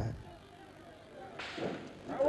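A single sudden sharp gunshot crack about a second and a half in, after a quiet stretch, fading quickly into noisy street sound.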